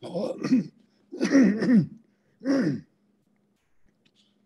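A woman clearing her throat, three times in about three seconds.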